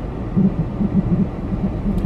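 Low rumble inside a car's cabin, with a run of soft low thumps through the middle.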